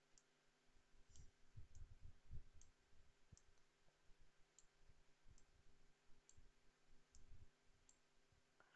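Faint computer mouse clicks, about one a second, over near silence, with a few soft low thumps.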